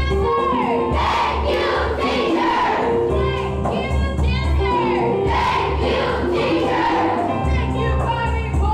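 Music: a song with singing voices over held notes and a heavy bass that comes in blocks about every second or two.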